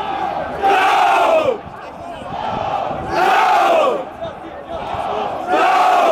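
Football crowd chanting in unison: a short shouted call by many voices, repeated three times about every two and a half seconds, with lower crowd noise in between.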